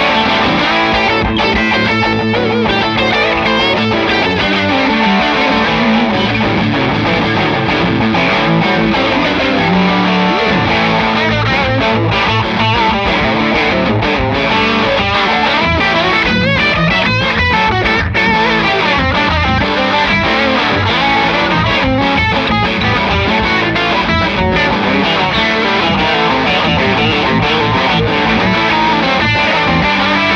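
Two Gretsch Broadkaster electric guitars played together through amplifiers in a continuous jam, one with a driven tone.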